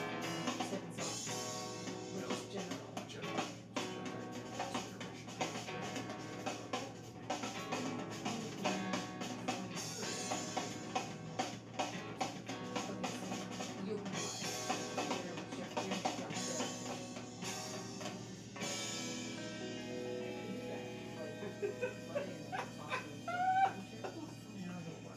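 Recorded band music with a drum kit and guitar playing at a steady beat. Near the end, a few short rising glides sound over it.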